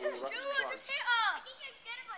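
Children's high-pitched excited shouts, with two long rising-and-falling cries in the first second and a half.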